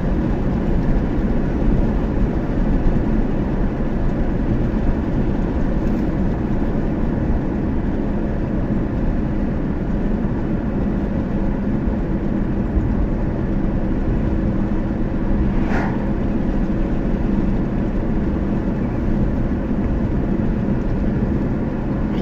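Steady road and engine noise inside a moving car: a low rumble with a faint steady hum. A brief swish about sixteen seconds in.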